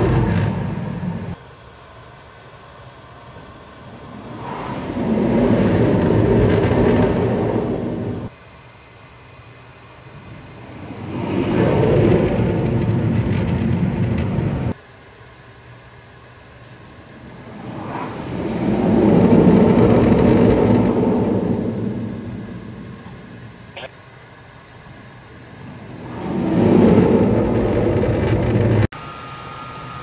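F/A-18 jet engines at full power during successive catapult launches, heard from inside the enclosed catapult control station. Each jet's noise builds over a few seconds and then cuts off sharply. This happens four times, after one launch ending right at the start, with a lower steady hum between them.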